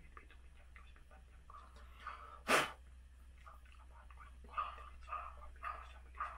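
Soft whispering, broken about two and a half seconds in by one short, sharp burst of breath, the loudest sound here; the whispering picks up again and grows busier near the end.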